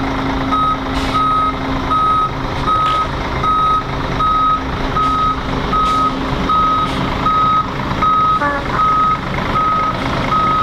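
Reversing alarm of a bus backing up: a single-pitched beep repeating evenly, a little under twice a second, over the bus's engine running.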